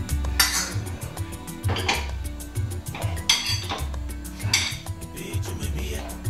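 Metal spoon scraping and clinking against a stainless steel cooking pot while stew is served out, four strokes a little over a second apart. Background music with a steady bass beat runs underneath.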